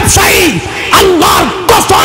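A man's voice shouting a fervent sermon through a public-address microphone, in loud, short, falling cries repeated in quick succession.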